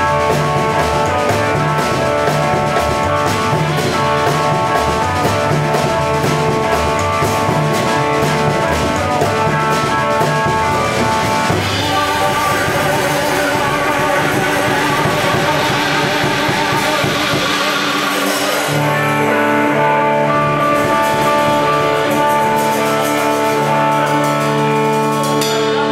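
A live blues trio plays an instrumental passage on electric guitar, drum kit and double bass. About three-quarters of the way in the drums drop out, leaving long held guitar notes over a low double bass line that is played with a bow.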